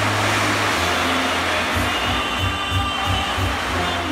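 Steady rushing hiss of a musical fountain's water jets spraying high, over show music with deep bass notes.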